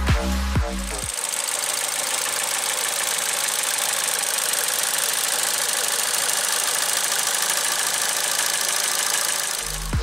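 Beat-driven electronic music for about the first second, then the 2018 Ford Figo's engine idling steadily, recorded over the open engine bay, an even running noise with little low rumble. The music comes back in just before the end.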